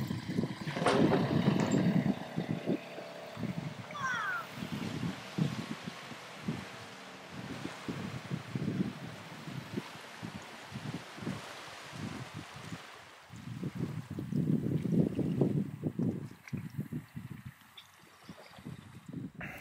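Wind buffeting the microphone in uneven gusts, strongest near the start and again near the end, over a faint, steady wash of water.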